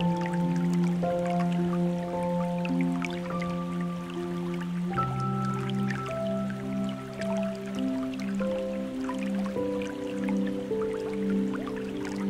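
Slow, soft ambient music of long held notes, the chord and bass shifting about five seconds in, over a steady patter of water splashing and dripping onto rock.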